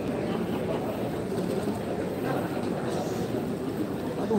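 Steady murmur of a crowd: many voices talking at once, none standing out.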